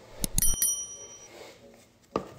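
A few quick clicks of something small and hard, then a clear metallic ring of several high tones that dies away within about a second.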